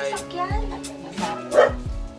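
Television broadcast sound from the TV set: a voice over music, with a dog barking once about one and a half seconds in.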